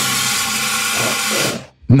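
Cartoon fire-extinguisher spray effect: a loud, steady hiss that starts abruptly and cuts off about a second and a half in.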